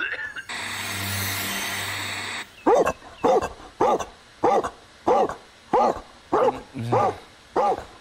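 A cartoon dog barking over and over, about nine short barks evenly spaced at one every 0.6 seconds, to wake its owner and be fed. Before the barking, about two seconds of steady hiss.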